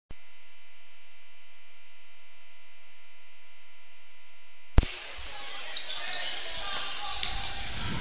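Steady electrical hum of several held tones on a radio broadcast feed during a lapse in coverage, which cuts off with a sharp click about five seconds in. The live feed from the basketball gym then returns with crowd noise in a large hall.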